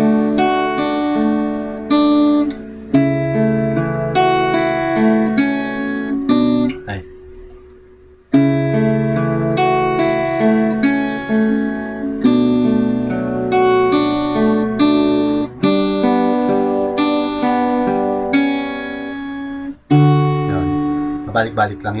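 Acoustic guitar with a capo on the second fret, fingerpicked in arpeggiated chord patterns, one string at a time, each note left ringing under the next. About seven seconds in the playing stops and the notes die away, then it picks up again a second later.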